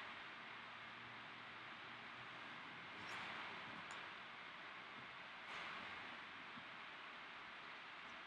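Near silence: faint steady room hiss with two soft, brief rustles, about three and five and a half seconds in, from hands pressing a feather boa onto denim.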